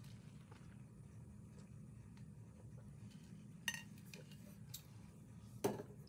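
Quiet room tone with a steady low hum, broken by a few faint clicks and taps; two sharper ones stand out, about two-thirds of the way through and just before the end.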